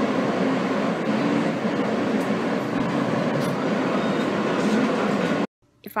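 Steady noise of a subway train running, heard from inside the passenger car. It cuts off suddenly about five and a half seconds in.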